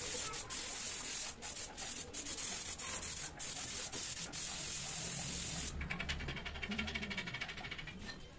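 Compressed-air paint spray gun hissing as it sprays paint onto a board, with a few short breaks in the hiss. The hiss stops about two-thirds of the way in, leaving a quieter fast rattle and a low hum.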